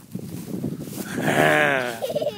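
Light rustling in the grass, then about a second in a man's voice holds one long, wavering, drawn-out 'ohhh'.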